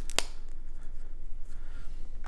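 A single sharp click about a fifth of a second in, from hands handling painting supplies at a table, followed by faint handling noise.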